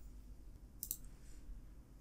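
Quiet room tone with one faint, short click a little under a second in, from the computer being worked.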